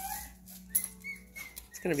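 A Chihuahua puppy whimpering: a thin, high whine about a second in, just after a short scuffling click.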